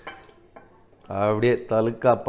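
A few faint light clicks of a steel pot being handled over a rice cooker, then a man's voice quickly repeating a short word from about a second in.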